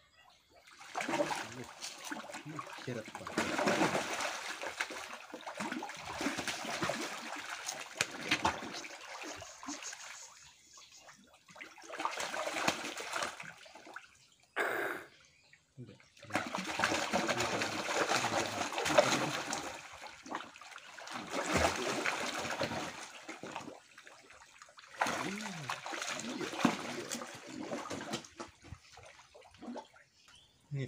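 A mass of catfish thrashing and splashing in shallow water at the surface as they feed on crackers. The splashing comes in bursts of several seconds with short lulls between them.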